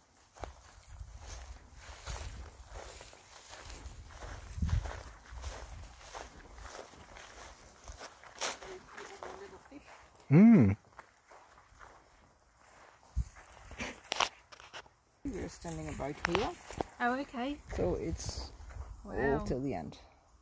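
Footsteps on dry grass and sandy ground, over a low rumble through the first half. Voices break in briefly about ten seconds in and again through the last few seconds.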